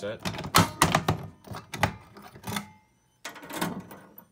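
Key turning in the reset lock of an ADT EG10L fire alarm pull station, with the station's mechanism resetting: a series of sharp clicks and thunks, several close together about half a second to a second in.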